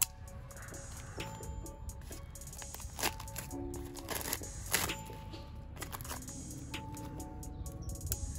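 A package being cut open with a pocket knife and handled: scattered sharp clicks and crackling of packaging, over background music.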